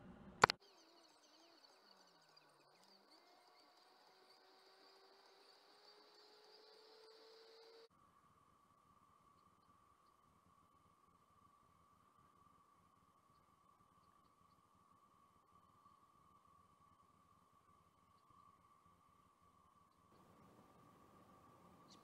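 Near silence: a faint steady high tone, with a single sharp click about half a second in.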